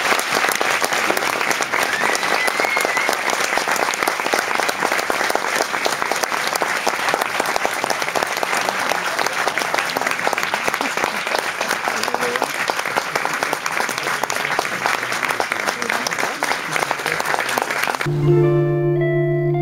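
A cinema audience applauding steadily, dense clapping with no break.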